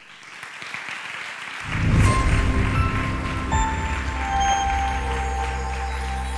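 Audience applause swelling after the talk ends, joined about a second and a half in by outro music with a deep steady bass and long held notes, which becomes the loudest sound.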